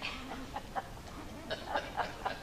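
Light laughter from a few people in a church congregation: short chuckling bursts that pick up about halfway through.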